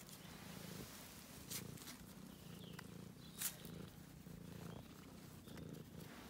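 Ginger-and-white domestic cat purring, a low steady purr in a run of pulses while it is stroked. Two short sharp clicks, about a second and a half in and again past halfway, the second the loudest sound.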